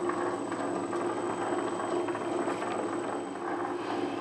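Hendey engine lathe running in back gear, a steady mechanical hum of motor and gearing. It is set up for thread cutting at 12 threads per inch, with the half nuts engaged on the lead screw.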